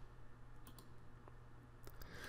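A few faint computer mouse clicks, spaced out over about a second and a half, over a quiet steady room hum.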